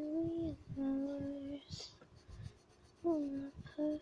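A high voice singing a slow melody in long held notes, with the soft scratching of a coloured pencil shading on paper underneath.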